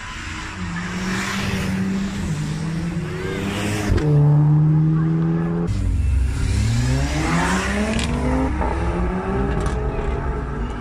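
Performance car engines revving and holding steady high revs at a standing start, then launching and accelerating hard from about six seconds in, the engine pitch rising steeply. An Audi RS3 and a Mercedes CLA 45 AMG are launching side by side.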